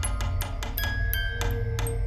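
A music box playing a slow melody: plucked metal notes, each starting with a small click and ringing on, over a low steady drone.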